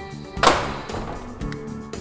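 Braun wheelchair lift platform unfolding in a van doorway, with one loud metal clunk about half a second in as the platform comes to a stop at floor level. Background music plays underneath.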